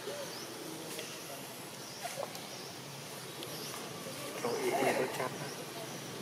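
A brief wavering vocal call, the loudest thing here, about four and a half seconds in, over a steady outdoor background with faint high chirps recurring every second or two.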